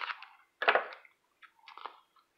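Crisp crackling of the clear cellophane wrapper on a pack of hockey cards being handled, in three short bursts with the last one weaker.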